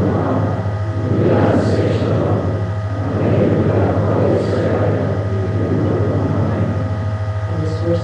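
Congregation reading a prayer aloud together, many voices overlapping in a dense murmur, over a steady low hum.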